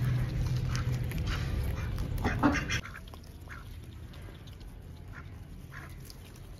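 Domestic ducks quacking in a few short calls, the loudest about two and a half seconds in. A steady low hum under the first part cuts off suddenly just before three seconds.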